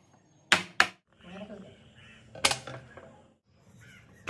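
Aluminium cake tin of batter rapped twice in quick succession on a wooden board, settling the batter and knocking out air bubbles. A second sharp knock follows about halfway through, with light handling noise between.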